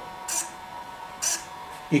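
King Max CLS0512W thin-wing servo with an all-metal gear train, driving in short high-pitched bursts about once a second as it cycles the pointer arm, over a faint steady hum.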